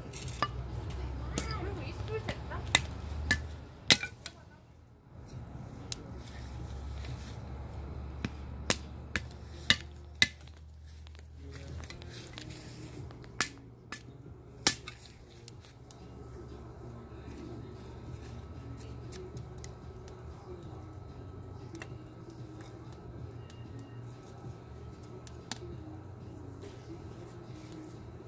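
Wood fire burning in a homemade cement rocket stove, fed with nearly damp wood: a low steady rumble with scattered sharp pops and cracks, most of them in the first fifteen seconds.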